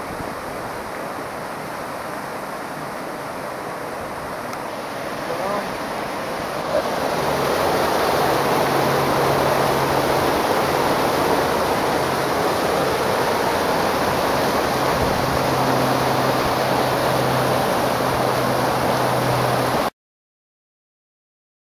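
Small punch-bowl waterfall pouring steadily off a rock ledge straight into a pool, splashing. It gets louder about seven seconds in, as the falling water is heard from close up.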